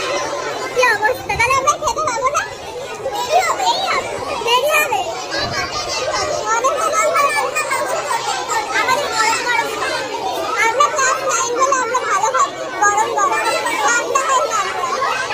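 Loud, dense chatter of many teenage girls' voices talking and calling over one another at once, with no single voice standing out.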